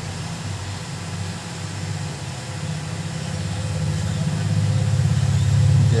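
Hot air rework gun's blower running with a steady low hum, growing louder over the last couple of seconds, as it heats the solder holding a phone's charging port to desolder it.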